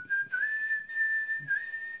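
A man whistling through his lips: the pitch steps up a little and then holds one high note, with a couple of brief dips.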